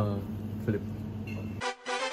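A steady low hum with a brief murmured 'mm' and a short spoken word over it. About one and a half seconds in, the hum cuts off and music starts.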